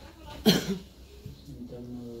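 A single short, sharp cough about half a second in.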